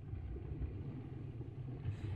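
A low, steady rumble in the background.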